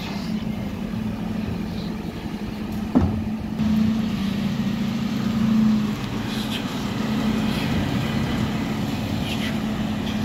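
Dennis Eagle Olympus Elite refuse lorry running, a steady engine hum that swells for a couple of seconds around the middle, with one sharp knock about 3 s in.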